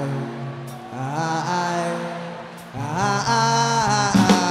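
Live rock band music in a sparse instrumental passage: held notes that slide upward twice, with little bass or drums, the band swelling back in near the end.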